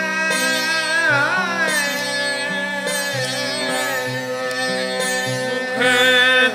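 Sindhi tambooros, long-necked plucked drone lutes, are strummed in a steady ringing drone, with a sliding note about a second in.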